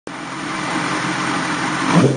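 MV Agusta Brutale S 750 inline-four motorcycle engine idling steadily while the bike stands still, picked up close by a bike-mounted camera.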